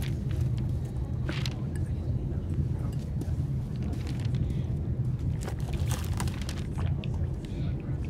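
Steady low drone of an airliner cabin in flight, with a few faint clicks and rustles on top.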